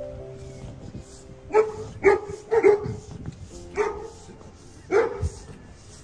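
Dog barking: five short barks, three in quick succession then two more spaced about a second apart.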